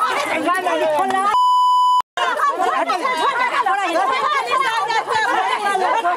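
Heated shouting of several women fighting, voices overlapping. About a second and a half in, a censor bleep, one steady high tone lasting about two-thirds of a second, blots out the shouting. The sound then cuts out for a moment before the shouting resumes.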